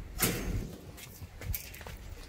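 A short scraping rustle about a quarter second in, then quieter clicks and rattles with footsteps, as a person steps out through the door of a wire-mesh animal enclosure.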